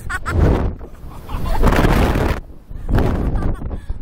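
Wind rushing over the microphone of a Slingshot ride capsule in three swells about a second apart as the capsule swings, with the two riders laughing and screaming between the gusts.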